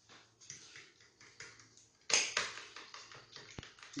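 Fork beating eggs and milk in a plastic bowl: quick repeated strokes, light at first and louder from about two seconds in.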